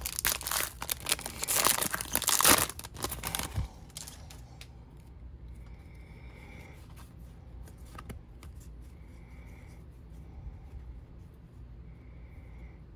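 A foil baseball-card pack wrapper being torn open and crinkled in the hands, loud and crackly for about the first three and a half seconds. After that come a few faint, short rustles of the cards being slid through the fingers.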